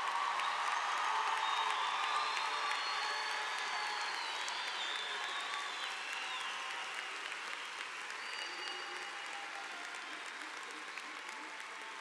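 Large crowd applauding in an arena, with a whistle or two over the clapping; it swells in the first couple of seconds, then slowly dies down.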